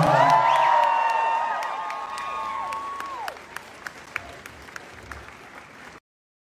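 Concert audience applauding, cheering and whistling with high, held whistles, loud at first, then dying away by about three seconds in. Scattered claps follow.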